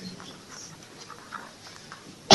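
Faint room noise, with a faint, brief sound about one and a half seconds in.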